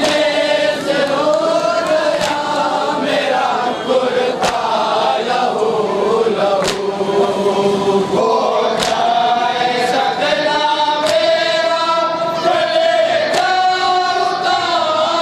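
A group of men chanting a nauha, a mourning lament, in unison into a microphone, with a sharp chest-beating slap (matam) about every two seconds.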